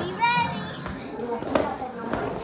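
A child's short high-pitched squeal about a quarter second in, then a light knock about a second and a half in, amid children playing.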